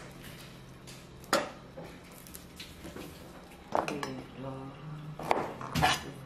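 Kitchen utensils and dishes knocking and clinking on a wooden cutting board and counter: a few separate sharp knocks, two of them close together near the end.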